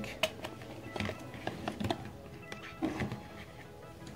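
A series of small, sharp clicks and knocks from components and wires being handled on a bench, over faint background music.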